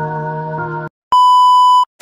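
Keyboard music with held chords stops abruptly. After a brief gap, a single loud, steady electronic beep of one high pitch follows, the kind used as a censor bleep in video edits, and it cuts off cleanly.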